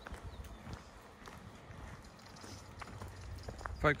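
Footsteps on a gravel path at walking pace, heard as irregular low thuds.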